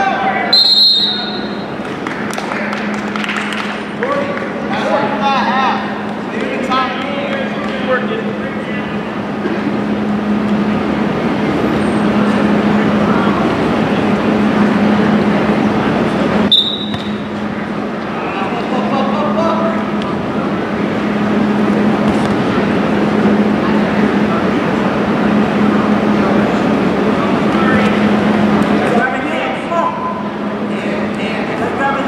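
Gym crowd noise with shouted voices from spectators and coaches over a steady low hum. Two short, shrill referee's whistle blasts come about a second in and again past halfway.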